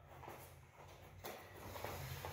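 Faint shuffling footsteps of two people stepping apart, over a low steady room hum.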